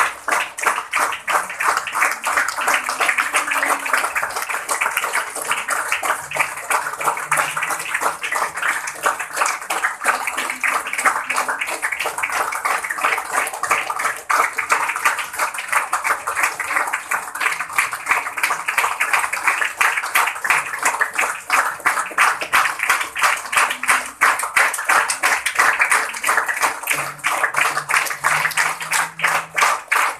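A large group clapping continuously in a steady, fast, even beat of hand claps.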